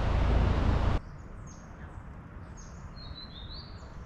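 Birds chirping in the trees: scattered short high chirps, with a longer whistled note near the middle. For about the first second, a loud rushing noise that cuts off suddenly.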